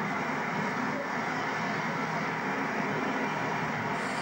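Thames Turbo diesel multiple unit running past on the far line: a steady noise of engine and wheels, level throughout.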